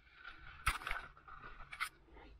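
Faint handling noise: light scraping and rustling, with two short, sharper scrapes, one about two-thirds of a second in and one near the end.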